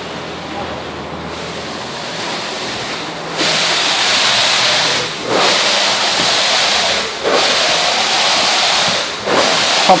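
Concrete pump at work: a quieter steady hum gives way about a third of the way in to a loud rushing hiss. The hiss drops out briefly about every two seconds, in step with the pump's stroke cycle.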